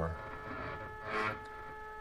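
Stepper motors of a coil winder jogging under GRBL control, the geared stepper on the spindle and the x-axis stepper running together: a faint steady whine of several pitched tones.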